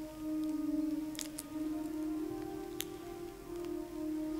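Church organ playing soft sustained chords as Communion music, with the chord changing about two seconds in. A few light clicks sound over it.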